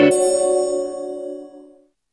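A bright struck chime closes a short musical jingle, ringing out and fading away to silence over about two seconds.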